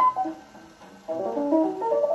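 1946 jazz piano record playing on an acoustic Orthophonic Victrola phonograph. A few notes sound at the start, the music eases briefly, then a busy run of notes comes in about a second in.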